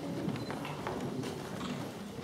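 Footsteps of several people on a wooden parquet floor: irregular hard clicks of shoe heels over a low background murmur.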